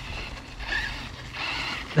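Arrma Notorious RC truck driving across grass, its brushless motor and drivetrain whirring with tyre noise, getting louder in the second half.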